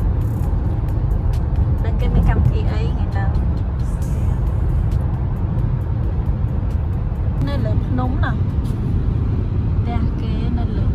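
Steady low road and engine rumble inside a car cruising at highway speed, with a voice heard briefly a couple of times, about two and eight seconds in.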